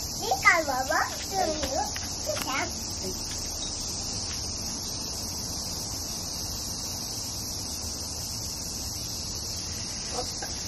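Cicadas buzzing in a steady, unbroken high-pitched chorus, with a small child's voice over it in the first few seconds.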